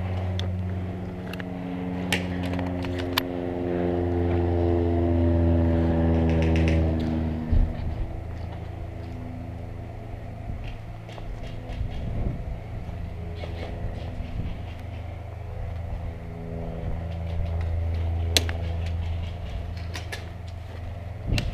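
An engine running steadily, its hum drifting slowly in pitch and swelling to its loudest around the middle before fading, then swelling again near the end. A few sharp clicks in the first few seconds.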